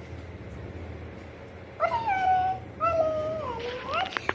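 A long-haired chocolate-point cat meowing twice, two drawn-out meows about a second apart, the first rising then falling, the second falling then lifting at its end.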